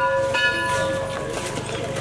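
A metal bell ringing with a clear, lasting tone, struck again about a third of a second in, its ring fading over the next second.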